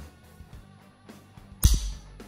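Browning Buck Mark .22 pistol dry-fired: after the trigger's slight take-up, one sharp metallic click about a second and a half in as the trigger breaks. Background music plays throughout.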